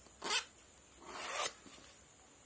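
Two scraping strokes of a hand and pen rubbing across notebook paper: a short one just after the start, then a longer one that grows louder and stops sharply about a second and a half in.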